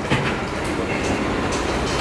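Handling noise on a lectern microphone as phones and recorders are set down around it: a low rumble with a few knocks, the first just after the start, and a faint high tone in the middle.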